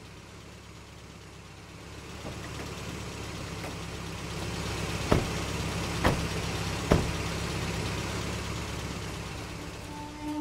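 An SUV's engine running steadily, growing louder a couple of seconds in, with three sharp car-door clunks about a second apart in the middle.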